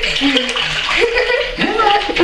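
Water running into a bathtub as a steady hiss, with people's voices over it.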